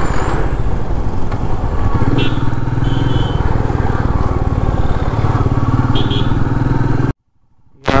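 Royal Enfield Meteor 350's single-cylinder engine running steadily under way, heard from the bike itself along with road noise. The sound cuts out briefly near the end.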